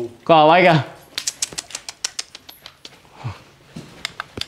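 Bats taking flight inside a rock cave: a quick run of sharp, irregular clicks and wing flutters for about a second and a half, thinning out towards the end.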